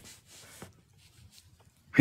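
Near silence in a pause between speech, with a faint short noise in the first half second.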